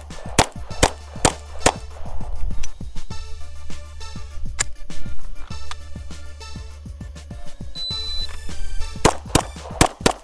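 9mm Girsan MC28 SA pistol fired in rapid strings over background music: five shots less than half a second apart at the start, a short high beep from a phone shot-timer app just before eight seconds in, then a quick string of three shots near the end.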